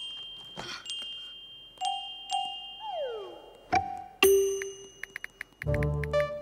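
Light, playful background music of chime-like notes struck one at a time, each ringing on, with a falling pitch glide about three seconds in. A few quick soft ticks come just after five seconds, and fuller music enters near the end.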